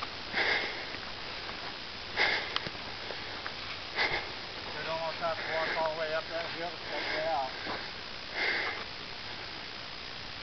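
Short sniffs and breaths, about five of them spread out, from someone walking with the camera on a rocky trail, with a faint voice wavering in the distance for a couple of seconds past the middle.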